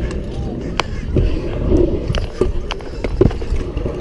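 Stunt scooter wheels rolling on concrete with a steady low rumble. Several sharp clicks and knocks from the deck and bars come through it as a double fingerwhip is thrown and landed, the strongest a little after three seconds in.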